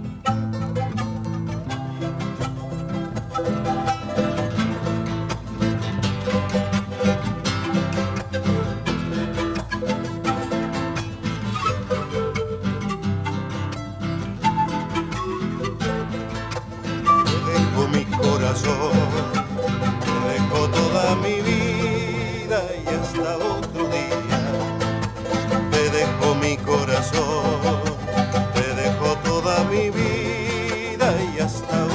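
Andean folk ensemble playing an instrumental passage: charango and acoustic guitar strumming, a bombo legüero drum beating, and zampoña panpipes carrying the melody. The playing gets louder about seventeen seconds in.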